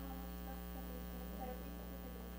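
Low, steady electrical mains hum on the audio line, with no other clear sound over it.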